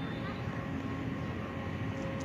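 A steady, distant engine drone with a few steady tones, over an outdoor background hiss.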